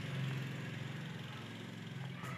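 A steady low hum of a running motor.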